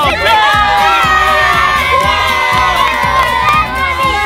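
A crowd of young boys shouting and cheering together, with several long drawn-out yells.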